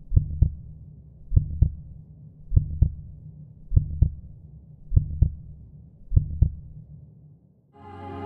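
Heartbeat sound effect, a slow lub-dub: six paired low thumps about 1.2 s apart, fading out near the end.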